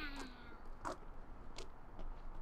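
A toddler's high-pitched voice, one drawn-out call that slides down in pitch and fades out about half a second in, followed by two faint clicks.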